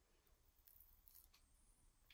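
Near silence, with a couple of faint, brief rustles of a plastic piping bag being squeezed as buttercream is piped through a grass nozzle.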